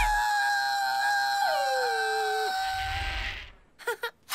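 Cartoon hyena's long, held howl of pain right after a mallet blow to the head, with a second tone sliding downward partway through; it cuts off shortly before the end.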